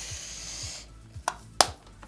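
Soft background music with a steady low beat. A high rustling hiss runs for most of the first second, then a few sharp clicks and taps of small objects being handled.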